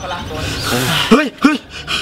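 Men's voices: a jumble of talk in the first second, then two short, loud shouts about a second in, half a second apart, like the exclamation "hey!"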